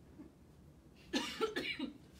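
A person coughing, a short burst of about four coughs about a second in.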